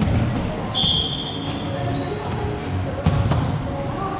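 Volleyball rally in a reverberant gym: a short high squeal about a second in, with fainter ones later, and two sharp ball hits in quick succession about three seconds in, over echoing background voices.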